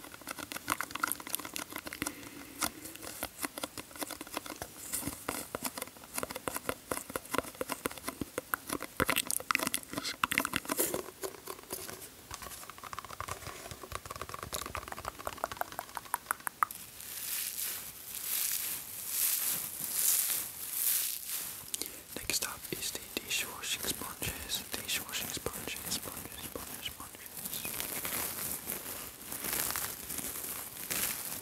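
Close-miked ASMR handling of a sponge and water orbs: a dense run of fine wet crackling and squelching, giving way about halfway through to slower, broad rubbing swishes.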